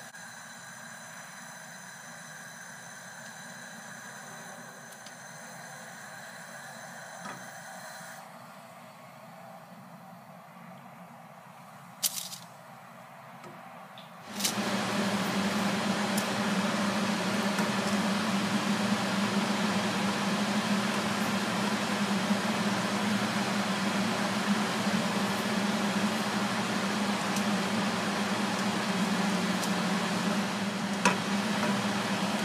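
Small flatbreads frying in a lightly oiled non-stick pan: a steady sizzling hiss that starts abruptly about halfway in, after a quiet stretch broken by one short click.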